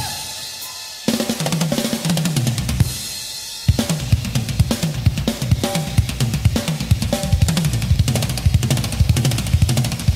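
Live drum kit and Afro-Cuban hand percussion playing a driving rhythm, with bass drum, snare and cymbal. The playing stops twice, near the start and about three seconds in, leaving a ring that fades before the drums crash back in.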